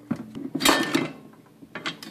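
Dented sheet-metal outer cover of a vacuum cleaner motor being wrenched off by hand: a scraping burst of metal on metal about half a second long, then a couple of short clicks near the end as it comes free.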